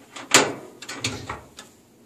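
Steel Craftsman tool cabinet drawer being shut: one sharp metal clack about a third of a second in, then a couple of softer knocks.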